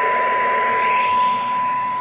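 Cobra 25 CB radio's speaker playing a steady 1 kHz AM test tone under a layer of static hiss. The receiver is picking up a weak 2.5-microvolt test signal from a signal generator, near its sensitivity limit before tune-up.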